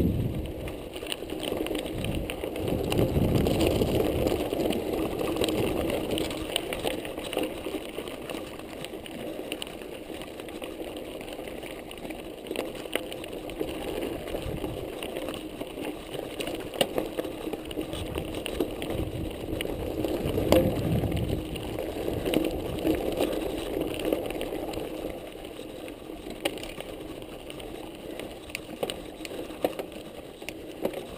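Mountain bike rolling down a dry dirt singletrack: steady tyre noise on the trail and rattle of the bike, with scattered clicks and knocks from rocks and the drivetrain. It is louder for a few seconds near the start and again about twenty seconds in.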